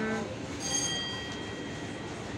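A single high metallic ring, like a small struck bell or a tapped glass or metal, starts about half a second in and fades away over about a second, heard over steady room noise.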